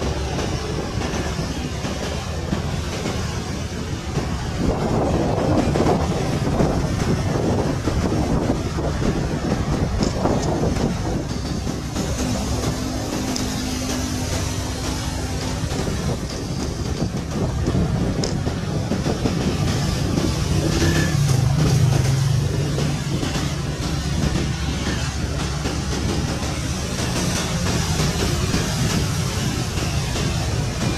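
Military utility helicopter hovering low: a steady rumble of turbine and rotor that swells a little twice as it moves.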